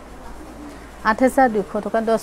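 A woman's voice talking, starting about a second in after a quiet stretch.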